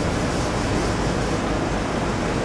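Steady, even background hiss with a low rumble underneath, unchanging throughout and with no distinct knocks or strokes.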